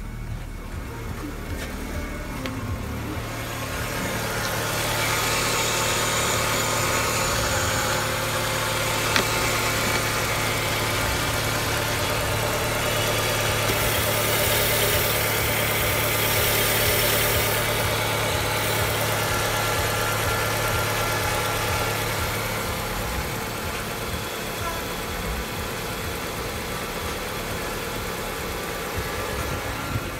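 Fiat Brava's 1.6-litre four-cylinder petrol engine (182B6000) idling steadily. It grows louder and brighter through the middle of the stretch, when heard up close in the engine bay at the open filler neck, with one sharp click about nine seconds in.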